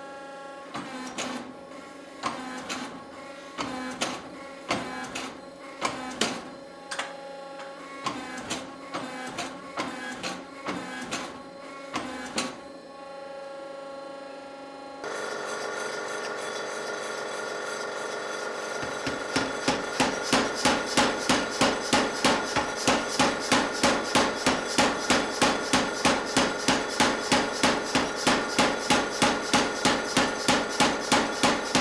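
Hammer blows on hot steel, irregular and about one a second, each followed by metallic ringing. About halfway through, a mechanical power hammer's motor starts running steadily. A few seconds later its dies begin pounding the glowing axe-head blank in a fast, even rhythm of about two and a half blows a second.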